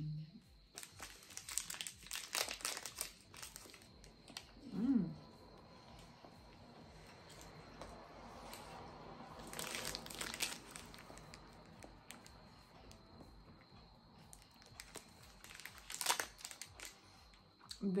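Plastic snack-bar wrapper crinkling as the opened bar is handled, in a few separate bursts: early, around ten seconds in, and near the end. A short hummed 'mm' about five seconds in.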